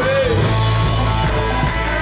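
Live rock band playing: drum kit, electric bass and electric guitar, at a steady loud level.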